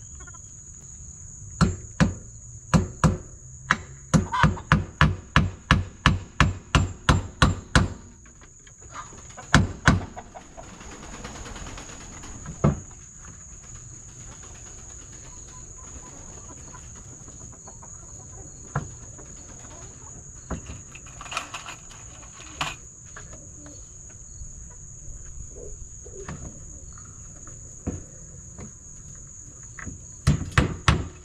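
Hammer driving nails into a wooden board: a quick run of about twenty strikes at roughly three a second, a pause, then a few single strikes. A steady high insect drone runs underneath.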